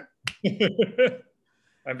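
Men laughing, with a single sharp click, like a finger snap, about a quarter second in. There is a short quiet gap before talk resumes near the end.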